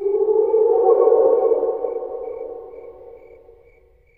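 An eerie held drone from a horror film soundtrack, several pitches sounding together. It swells in the first second and slowly fades out toward the end.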